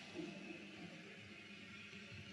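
Very quiet room tone in a hall, with no clear sound event.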